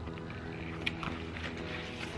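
Soft background music of low sustained tones, with a couple of faint clicks about a second in as a spiral-bound paper journal is handled and opened.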